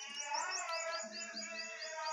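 A small bird chirping in a quick series of short, high notes, about five a second.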